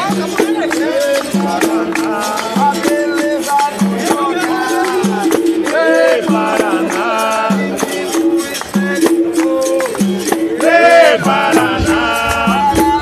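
Capoeira roda music: berimbaus twanging a repeating two-note pattern, with caxixi rattles and a pandeiro beating, under voices singing.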